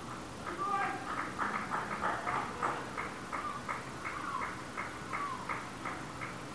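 Animal chirping in a rapid series of short, high calls, about four a second, some sliding in pitch, over the steady hum of an outdoor ground.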